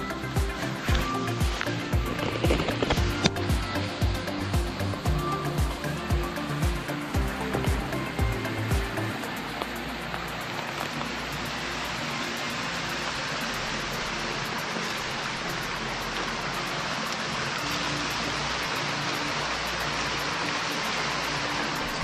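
Background music with a steady beat for about the first nine seconds, then the steady rush of a creek pouring over the lip of a waterfall.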